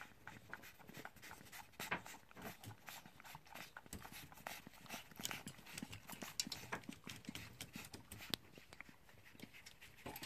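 A flying fox (Pteropus fruit bat) eating chopped fruit from a bowl: faint, irregular wet chewing and smacking clicks, several a second.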